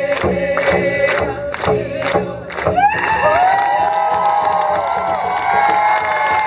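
A hide frame hand drum beaten in a steady beat, about two strokes a second, under a woman's singing, ending about three seconds in. The crowd then breaks into cheering and high whoops.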